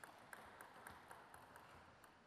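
Faint, quick, even bounces of a table tennis ball, about four a second, as a player bounces it while getting ready to serve.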